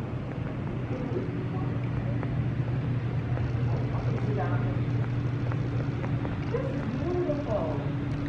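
A steady low hum, with faint voices in the background through the second half.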